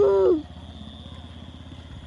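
A person's drawn-out call, held for under a second and dropping in pitch at the end. It is followed by a motorcycle engine running low and steady as the bike rides away.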